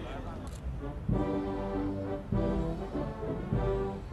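Brass band music starts about a second in: slow, sustained chords, each held about a second and a quarter before the next comes in.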